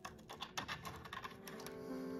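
A quick, irregular run of faint small clicks and rattles from wires and a plastic connector plug being handled and fitted into a control box's circuit boards. Background music rises near the end.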